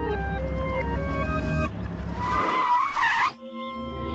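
Cartoon background music, then about two seconds in a skid sound effect: a screech with a wavering pitch lasting about a second that cuts off sharply.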